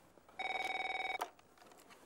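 Landline telephone ringing: one short electronic ring, a steady fluttering tone lasting under a second, starting about half a second in.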